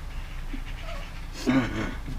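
A short, breathy burst of laughter near the end, over low steady room hum.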